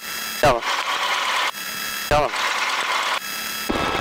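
Hissing static on the light plane's radio and intercom audio, with a few thin high steady tones in it, cutting in and out in blocks while the engine idles underneath. It fits a radio link that keeps breaking up.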